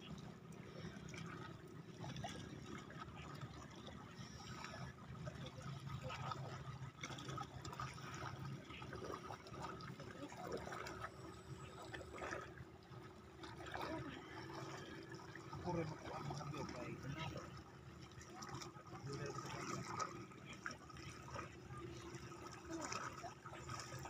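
Faint lapping and trickling of small sea waves against a rocky shore, with quiet voices in the background.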